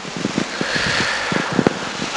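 Rustling and handling noise close to the microphone: a steady rough rustle with a scatter of small knocks, and no speech.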